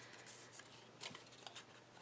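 Near silence with faint rustling of paper cutouts being handled, the clearest about a second in.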